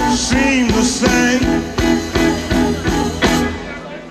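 Live electric blues band playing a slow blues with electric guitar, bass and drums on a steady beat and some bent lead notes. The band thins out near the end.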